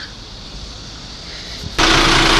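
Faint steady outdoor street background with a low rumble. Near the end a loud steady rush of noise cuts in abruptly.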